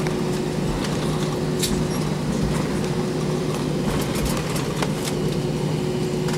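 Steady cabin noise of an Airbus A320-232 taxiing after landing: its IAE V2500 engines at idle and the air conditioning make an even rush with a low hum and a fainter higher tone. A few faint clicks come around the middle.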